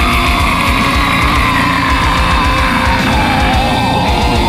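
Heavy metal music: fast, even double-kick drumming under one long held note that sags slowly in pitch.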